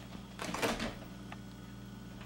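A short scrabbling rustle, about half a second long and starting just under half a second in, as a cat clambers down the carpeted posts and platforms of a cat climbing tree. A low steady hum runs underneath.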